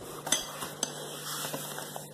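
Plastic and metal parts of a baby play yard being fitted together by hand: two sharp clicks about a third of a second and just under a second in, then a few fainter ticks.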